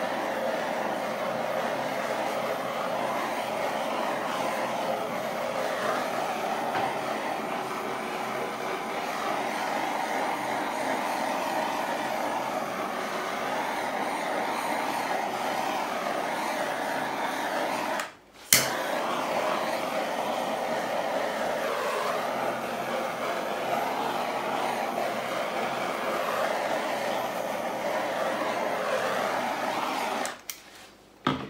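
Handheld gas torch burning with a steady hiss as it is played over wet poured acrylic paint to bring up the cells. About 18 seconds in the flame stops for a moment, then starts again with a sharp click.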